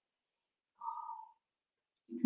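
A short, faint pitched mouth sound from a person sipping a drink from a glass, lasting about half a second, about a second in.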